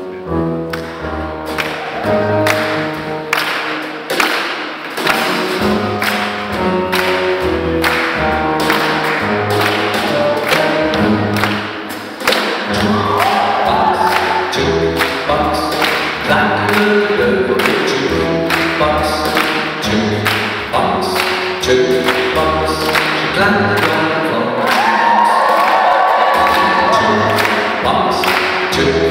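Live big band playing swing music, with a steady beat about twice a second over a low bass line and sustained notes that swell up twice.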